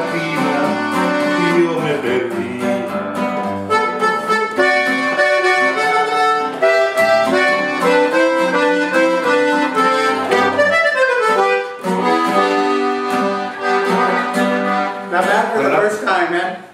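Button accordion playing a conjunto melody, backed by a bajo sexto strumming chords and bass lines, with no singing. About two-thirds through the accordion plays a falling run, and the tune closes near the end.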